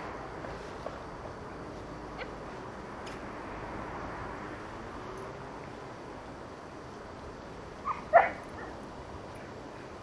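A dog gives two short yips close together about eight seconds in, the second one louder.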